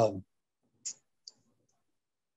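A man's voice trails off on 'uh', then two faint, short clicks about half a second apart in an otherwise silent pause.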